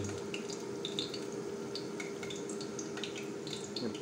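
Chicken frying in hot cooking oil: a steady sizzle with small scattered crackles, over a faint steady hum.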